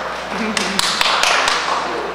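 Low murmur of voices in a large hall, with a handful of sharp taps about half a second to a second and a half in.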